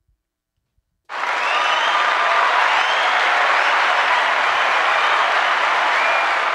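Crowd applause with a few faint cheers. It comes in suddenly about a second in at full strength and holds steady, as a played sound effect would.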